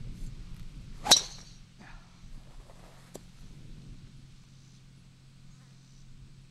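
Golf driver striking a teed ball: one sharp, loud crack about a second in.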